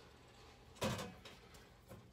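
Hinged sheet-metal door of a breaker panel cover being unlatched and swung open: one short metallic clack about a second in.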